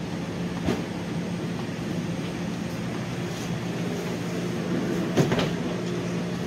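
Steady low hum of shop refrigeration, with a click about a second in and a louder knock near the end as a glass-door display cooler is pulled open.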